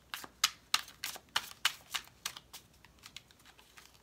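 An irregular run of light, sharp clicks, about four a second, fading after about two and a half seconds.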